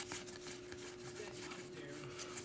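Pokémon trading cards being slid apart between two hands, a faint rustle with light ticks as each card moves, over a low steady hum.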